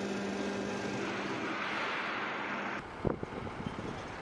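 Steady outdoor ambience: a low machine hum under a hiss of noise, cutting off suddenly about three seconds in, then fainter scattered sounds.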